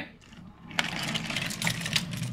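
Small wooden toy train wagons rolling along wooden track, a click about a second in and then a steady rattling clatter of wheels over the rails.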